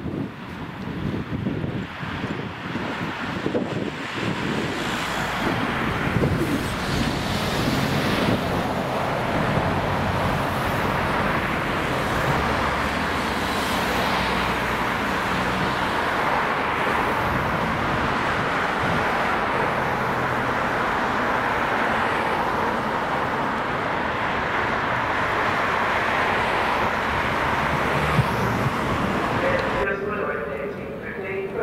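Diesel locomotive running as it approaches hauling a rake of coaches, its engine note mixed with wheel and rail noise. The sound builds over the first several seconds and then holds steady, with some wind on the microphone at the start.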